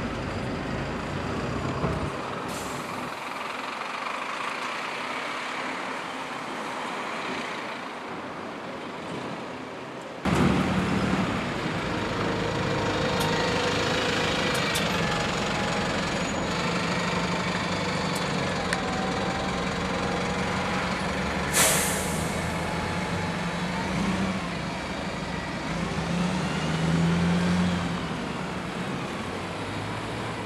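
Buses and traffic running along a town street, with a bus engine pulling away in rising and falling tones. About two-thirds of the way through, a bus's air brakes give one short, sharp hiss.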